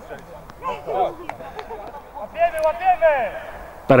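Players' voices on the pitch: short shouts about a second in and a longer raised call from about two and a half seconds in, fainter than the commentary.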